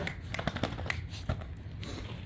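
A dog moving and sniffing about along a bed: light, irregular clicks and rustling.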